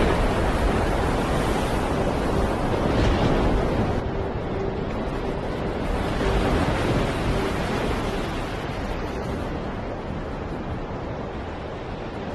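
Steady rushing noise like surf and wind from a documentary trailer's soundtrack. It swells about three seconds in, and a faint held low tone sits under it in the middle.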